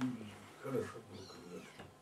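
Faint, short wordless vocal sounds: a brief murmur about two-thirds of a second in and a fainter one later.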